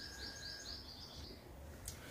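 Faint bird chirping: a quick run of short, high chirps that stops a little after a second in.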